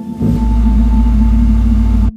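Dramatic soundtrack hit: a loud, deep bass rumble swells in about a quarter second in over a sustained droning musical tone, then cuts off suddenly at the end.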